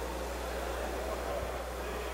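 Steady low hum under faint, indistinct background voices, with no distinct events.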